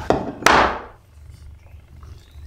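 Plastic chemistry bottles handled on a tabletop: a faint click, then one sharp knock about half a second in that rings briefly.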